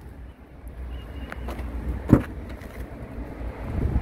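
Rear door latch of a 2021 Mitsubishi Pajero clicking once as the door is opened about two seconds in, with a fainter click just before, over a steady low background rumble.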